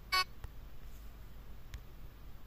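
A brief electronic beep-like tone just after the start, followed by a couple of faint clicks.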